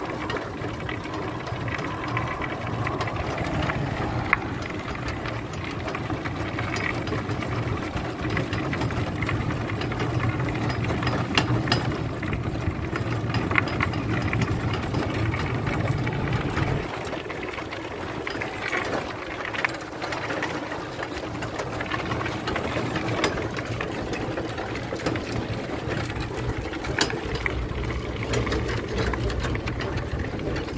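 Steady mechanical whirring of an electric trike under way on a rough chip-sealed trail: the front hub motor's low hum with drivetrain and tyre noise, and scattered clicks and rattles. The hum drops out a little past halfway and comes back near the end.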